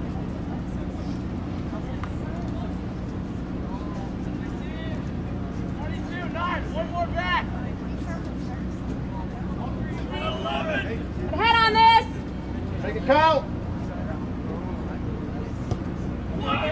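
Voices shouting calls across an open field in a few short bursts, loudest about two-thirds of the way through, over a steady low hum and rumble from the open-air recording.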